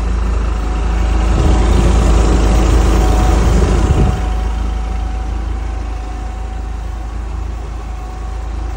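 Propane-fuelled Yale forklift engine idling steadily, louder for a few seconds in the middle and then settling, with a faint constant whine above the rumble.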